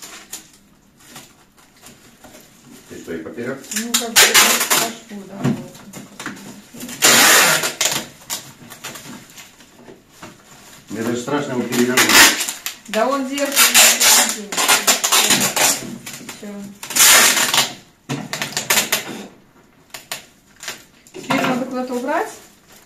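Packing tape pulled off the roll in about four long, rasping rips as a plastic bag of Lego is wrapped, with the bag's plastic crinkling. Voices and laughter come between the rips.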